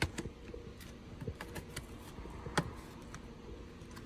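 Plastic dashboard side cover being pried off its retaining clips: a handful of sharp plastic clicks and knocks, the loudest about two and a half seconds in, over a faint steady low hum.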